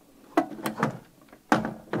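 Clicks and knocks of a cable plug being pushed into the rear jack of a rack-mounted compressor, with a heavier thump against the rack gear about one and a half seconds in.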